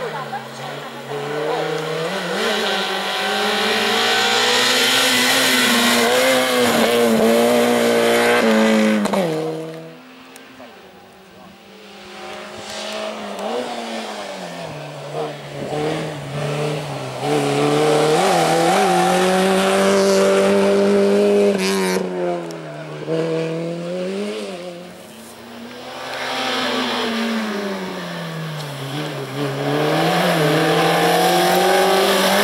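Peugeot 106 slalom car's four-cylinder engine revving hard and easing off again and again as it weaves through cones, its pitch climbing and falling with throttle and gear changes. The engine sound drops away for a couple of seconds about a third of the way in and dips again near the end.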